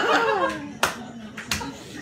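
A man's laughter trails off, then two sharp hand claps come about two-thirds of a second apart.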